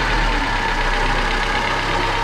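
A 16-valve GTI petrol engine idling steadily on its first run after a head-gasket replacement. The mechanics put an odd noise from the car down to seized alternator bearings.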